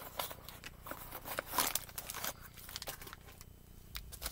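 Rustling and small clicks of a small box and its wrapping being handled and opened, with a pair of glasses and their cloth taken out; the noise is busiest around the middle and dies down near the end.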